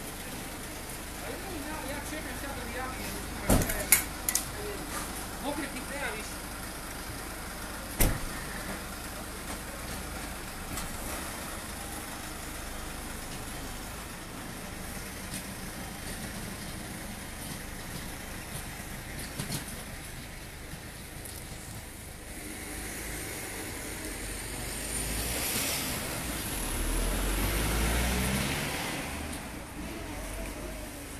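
A vehicle engine running at idle under background voices, with a few sharp knocks in the first eight seconds. Near the end a louder, lower vehicle sound swells and fades over several seconds.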